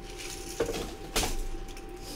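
Small objects being handled on a tabletop: two light clicks, about half a second and just over a second in, amid faint rustling, over a steady low electrical hum.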